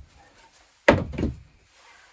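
Two wooden knocks in quick succession about a second in, the first the louder: a wooden board being knocked into place against the OSB wall and plank floor.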